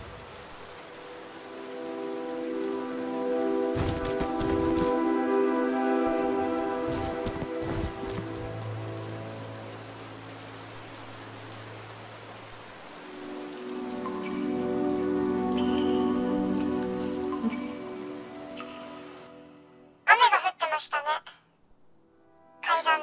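Steady heavy rain under a sustained, slow music score, with a few dull low thuds about four to eight seconds in. The rain and music stop about nineteen seconds in, and near the end come two brief, loud, warbling bursts.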